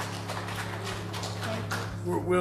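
Footsteps of hard-soled shoes knocking irregularly across a wooden platform, over the faint fading tail of the music.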